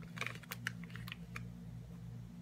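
Light clicking and plastic-bag crinkling as a Mishimoto magnetic oil drain plug is touched to a Subaru PCV valve in its bag, the magnet snapping onto the metal. The clicks come in a quick cluster over the first second and a half.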